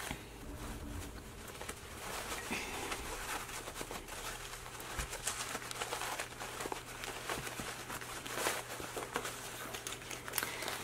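Faint, irregular rustling and crinkling of a fabric bag with foam-stabilized panels, dotted with small ticks, as it is pulled through its lining's turning opening and turned right side out.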